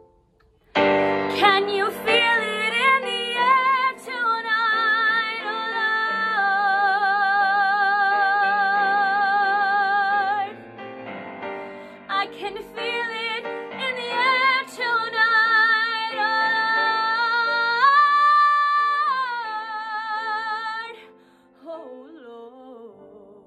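A woman singing a musical theatre song, holding long notes with strong vibrato over piano accompaniment. She comes in suddenly and loudly about a second in, holds one note for about four seconds in the middle, and the singing fades out just before the end.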